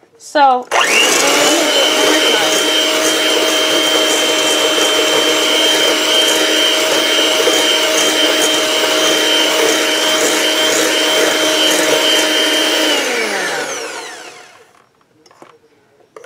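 Electric hand mixer speeding up with a rising whine, then running steadily as its beaters whip egg whites in a stainless steel bowl toward stiff peaks. About thirteen seconds in it winds down, its pitch falling away.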